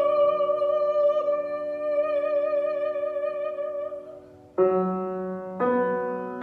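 A woman's operatic voice holds one long note with vibrato over a sustained grand piano chord, fading out about four seconds in. The grand piano then plays two struck chords, about a second apart.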